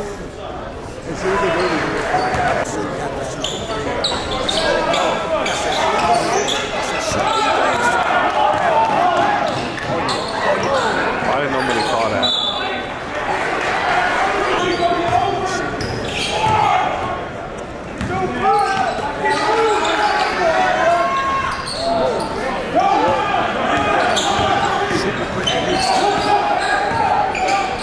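Basketball bouncing on a hardwood gym floor amid a crowd of many voices talking and shouting, echoing in a large gymnasium. The crowd grows louder about a second in.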